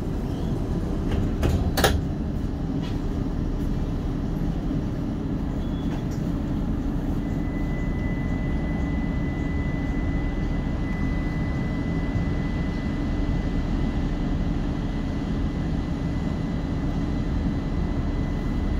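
Steady low rumble inside a light rail tram standing at a stop, with a single sharp knock about two seconds in and a faint steady high tone from about seven seconds on.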